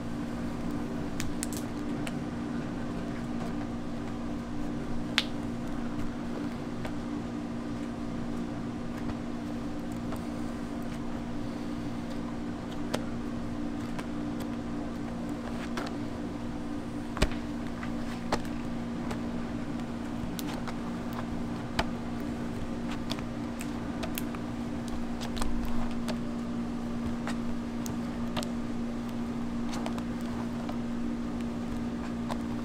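Steady low mechanical hum, like a ventilation fan, with a few sharp clicks and knocks scattered through as a hot hard-candy mass is thrown over a steel candy hook and pulled by hand.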